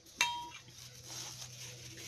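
A single clink of a kitchen utensil striking a bowl, ringing briefly, followed by faint handling noise.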